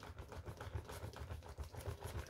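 Folding hand fan waved quickly in front of the face, drying freshly applied makeup setting spray. Its strokes push air across the microphone in a fast, uneven flutter, with a light papery rustle from the fan's folds.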